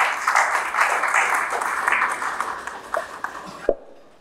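Audience applauding, the clapping fading away over a few seconds, with a few last separate claps near the end.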